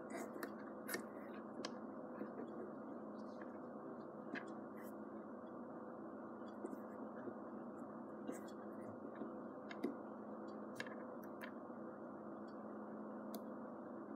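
Scattered light clicks and taps of plastic building-block pieces as a Mega Construx dragon figure is handled and fitted onto its display-stand peg, over a steady low room hum.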